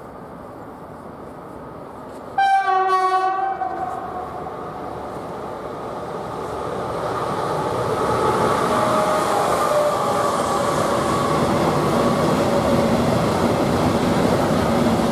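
A single horn blast of about a second and a half from an approaching Italian FS E405 electric locomotive, then the freight train of hopper wagons running past, growing louder as it nears and staying loud as the wagons roll by.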